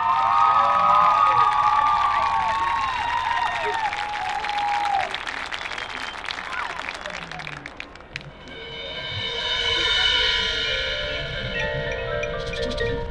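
A crowd cheering and whooping over applause, dying away by about eight seconds in. Then the marching band's front-ensemble mallet percussion (marimba, vibraphone and bells) starts ringing soft sustained chords.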